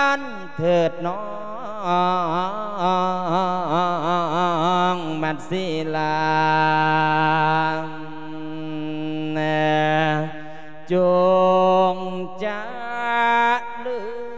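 A Buddhist monk singing an Isan-style lae sermon into a microphone: one male voice in long, drawn-out lines with a strong wavering vibrato and several long held notes. The words close a khwan-calling blessing that wishes the listener happiness.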